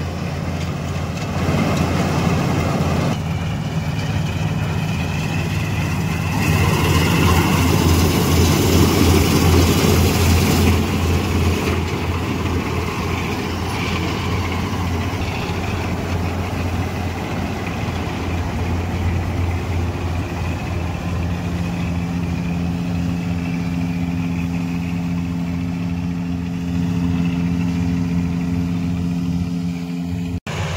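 Self-propelled combine harvester at work cutting standing wheat: a loud, steady engine drone under the noise of the header and threshing, growing louder for a few seconds about a third of the way in, then settling into a steadier hum.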